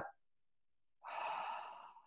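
A woman's single audible breath, about a second long and starting about a second in, drawn as she opens up her chest with hands on hips.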